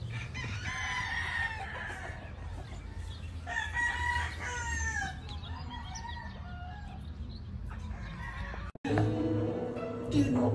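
Gamecock rooster crowing twice: a long crow about half a second in and another about three and a half seconds in, trailing down at its end, over a steady low rumble. Near the end the sound breaks off abruptly and plucked guitar music begins.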